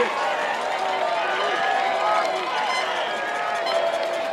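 Football stadium crowd: many voices shouting and talking over one another at a steady level.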